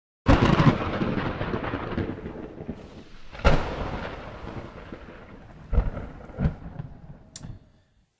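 Thunder sound effect: a sudden loud crack just after the start and another about three and a half seconds in, each dying away in a long rolling rumble, then a few smaller cracks before it fades out.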